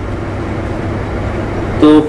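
Steady low hum with an even hiss over it, without distinct knocks or clicks; a man's voice comes in just before the end.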